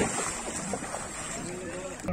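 A bull splashing through shallow river water, loudest at the start, with wind on the microphone and people's voices in the background.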